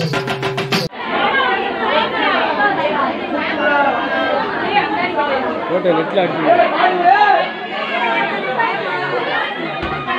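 Many voices talking at once in a crowd. In the first second, music with rapid drumming plays and cuts off suddenly.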